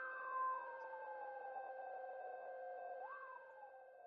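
Quiet electronic synthesizer drone: a few steady held tones with one pitch gliding slowly downward, swooping up briefly about three seconds in and then sliding down again.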